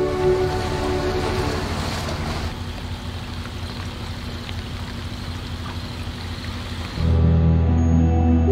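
Background music fades out in the first two seconds into a steady low rumble under a haze of water and wind noise, as from a boat's motor running on open water. Music starts again abruptly about a second before the end.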